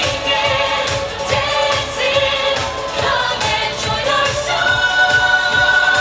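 Parade music: a pop-style song with several voices singing together over a steady beat, one high note held near the end.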